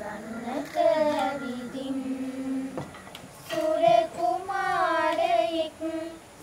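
A group of young girls singing together without accompaniment: slow, long held notes that slide and waver in pitch, with a short break between two phrases about halfway through.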